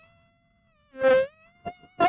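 A woman's worship singing in a pause between lines: a short sung note about a second in, over a thin steady whine-like tone with a few overtones, and three faint clicks near the end.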